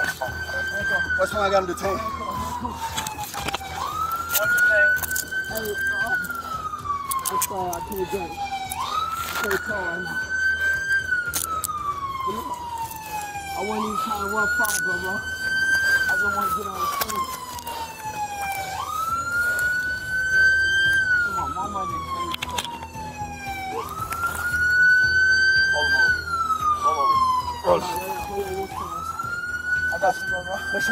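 Police car siren in a slow wail: each cycle climbs quickly, holds high, then slides slowly down, repeating about every five seconds, six times over. A few short knocks are heard among it.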